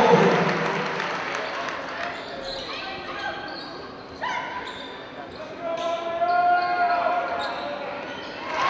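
Basketball game sound in a gym: crowd noise dies down over the first few seconds, with a basketball bouncing on the hardwood court. Players' voices call out across the hall about halfway through and again near the end.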